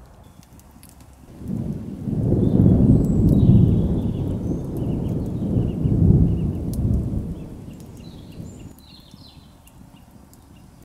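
A deep rumble like thunder swells in about a second in, holds for several seconds and fades away before the end, with faint high chirps and clicks above it.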